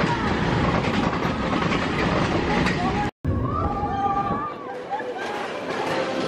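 Space Mountain roller coaster car rumbling and clattering along its track, with voices over the noise. The sound cuts out abruptly for a moment about three seconds in, and the low rumble fades away near the end.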